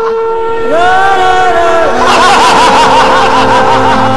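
Men's loud, exaggerated laughter starting about halfway, in quick repeated bursts, over a steady held music drone; a gliding tone rises and falls about a second in.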